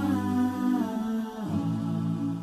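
Wordless vocal music: voices humming long held notes, with no instruments. The notes change pitch about a second and a half in.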